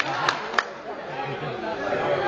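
Crowd of students chattering in a large hall, with two sharp clicks in the first second.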